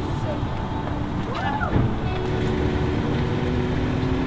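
Background music with long held notes over a steady low rumble, and a brief rising-and-falling voice-like sound about a second and a half in.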